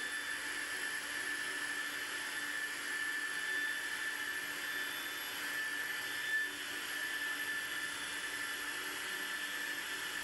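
Electric air pump running steadily with a high whine, blowing air into an inflatable pool. There is a brief bump about six seconds in.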